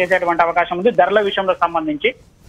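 Speech only: a man talking in Telugu over a telephone line, his voice narrow and cut off above the middle range.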